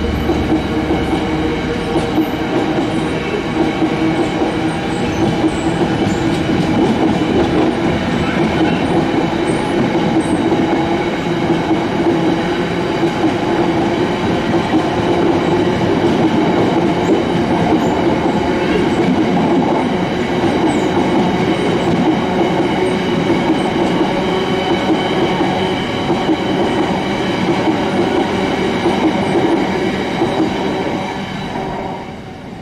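Loaded freight train of covered hopper wagons rolling past at low speed, wheels rumbling and clattering on the rails with steady ringing tones above the rumble.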